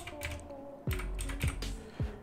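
Computer keyboard keys being typed: a handful of separate keystrokes as a six-digit code is entered.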